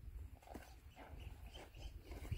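Faint horse sounds: a few short, soft noises from horses in the paddock over a low rumble.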